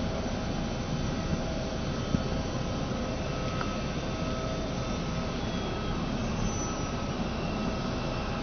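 Steady jet-aircraft turbine noise: a continuous rushing hum with faint steady whining tones above it.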